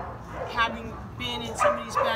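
A dog whining and yipping in a string of short, high, steady-pitched notes, several a second.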